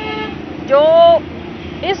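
A woman speaking Urdu: one drawn-out word about half a second in, a short pause, then the next word at the end. Under it runs steady background traffic noise with a low hum.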